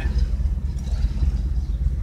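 Steady low drone of a car's engine and road noise heard from inside the cabin while driving.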